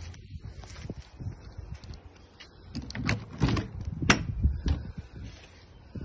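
Travel trailer entry door being unlatched and opened: a few knocks about three seconds in, then a sharp latch click a second later, after quieter handling noise.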